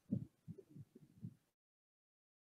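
A few faint, short low thumps over near silence, stopping dead about one and a half seconds in as the sound cuts to total silence.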